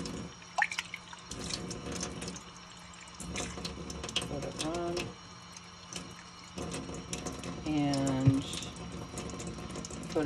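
Water running in a steady stream from an Enagic water ionizer's flexible stainless spout into a stainless steel sink, splashing and dripping; partway through, the stream pours into a drinking glass.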